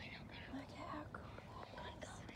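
Hushed whispering, with a few faint, short calls from a flock of ducks circling overhead.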